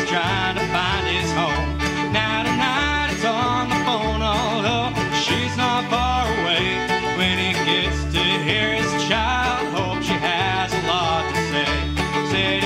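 Instrumental break in a country-bluegrass song played on string instruments: a lead melody that bends and slides in pitch over a steady bass beat.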